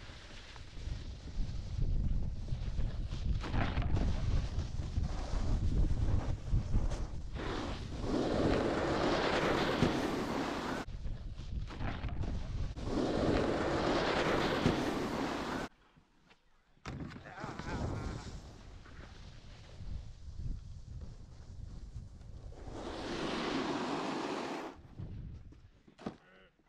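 Wind buffeting the microphone over a snowboard carving on packed snow, with long hissing scrapes as the board slides; one of them comes as the board slides across a tube feature. The sound cuts off suddenly a couple of times.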